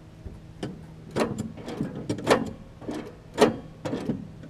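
Metal clanks and knocks from a riding mower's deck blade-engagement linkage and belt idler pulley being worked by hand, about eight sharp strikes spread unevenly over a steady low hum.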